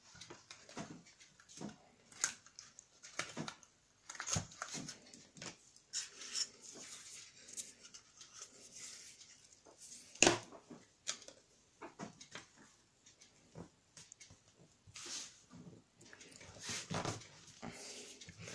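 Scrapbook paper and kraft board being handled: soft rustling with scattered light taps and clicks, including one sharper click about ten seconds in.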